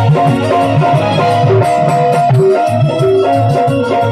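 Live band playing an instrumental passage with no singing: a keyboard melody over a repeating bass line.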